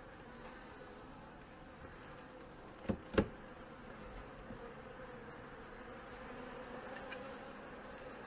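Honey bees buzzing steadily at an open hive, a hum that holds one pitch. About three seconds in come two sharp wooden knocks close together as a frame is set back into the hive box.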